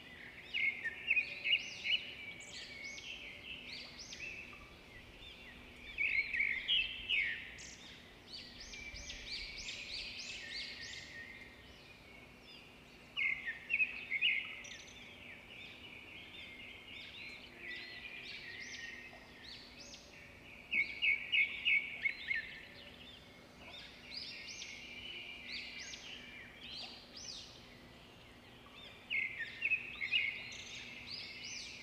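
Birds chirping and chattering in bursts every few seconds, with quick runs of repeated high notes, over a faint steady hum.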